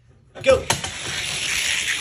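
Start gate of a two-lane diecast drag track snapping open with a click, then a steady rolling rush as two Hot Wheels die-cast cars run down the track.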